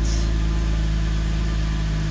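Mercedes-Benz M272 V6 engine idling steadily at about 1,000 rpm, heard from inside the cabin.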